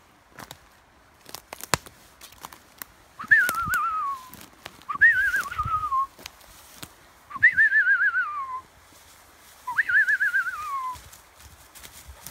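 A person whistling to call a dog: four wavering whistles, each jumping up and then sliding down in pitch, about two seconds apart. A few sharp clicks, like twigs snapping underfoot, come before the first whistle.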